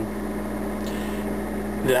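A steady low hum at one unchanging pitch, with no other sound.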